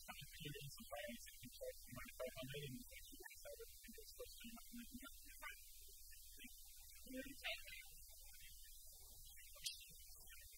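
Low, steady electrical hum of room tone, with faint, indistinct talking in the first few seconds and a sharp tick near the end.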